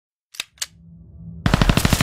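Machine-gun sound effect: two sharp clicks, then a rising low swell, then about one and a half seconds in a rapid burst of automatic gunfire, about a dozen shots a second.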